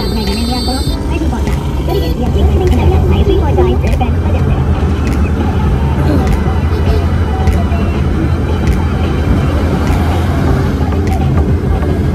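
Steady low engine and road rumble heard inside a small car's cabin while it is being driven, growing louder about two seconds in.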